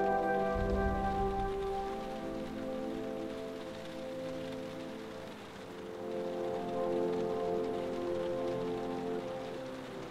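Slow music of long held chords that change about two seconds in and again about six seconds in, over the steady hiss of falling rain.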